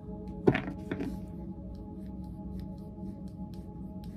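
Tarot deck handled in shuffling: two knocks about half a second apart, the first the loudest, then a few light card clicks. Soft, steady background music runs throughout.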